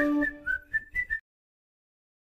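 A short whistled tune of about six quick, high notes hopping up and down in pitch, ending a little over a second in.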